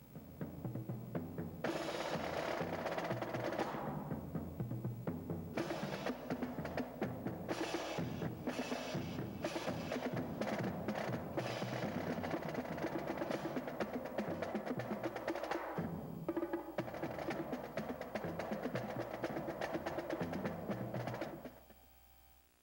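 Percussion-driven music with drums, steady and rhythmic, fading out near the end.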